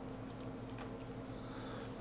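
Faint, scattered clicks from a computer mouse and keyboard while polygons are selected one after another, some clicks in quick pairs. A steady low electrical hum runs underneath.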